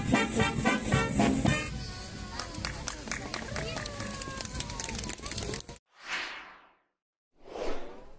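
A brass and saxophone street orchestra plays a lively swing-style tune that ends about a second and a half in. Outdoor crowd voices follow, then after a sudden cut come two short whooshes that swell and fade.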